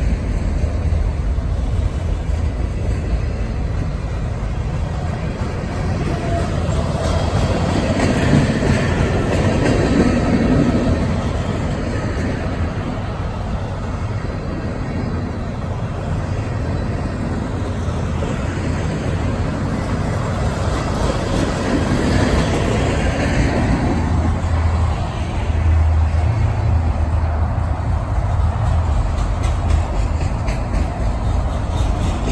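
Freight cars of a slow-moving manifest train rolling past: a continuous rumble and rattle of steel wheels on the rail, swelling a little louder now and then as cars go by.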